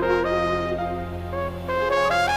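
Trumpet playing a slow solo phrase of held notes over sustained low accompaniment. The line steps down and then starts climbing near the end.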